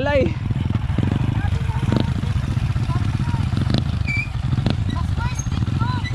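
Small motorcycle engines running at low revs, a steady low drone, with faint voices of people talking over it.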